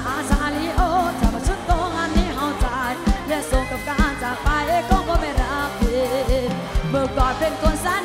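Live Isan mor lam toei music from a stage band: singing and a wavering, ornamented melody over a steady drum beat.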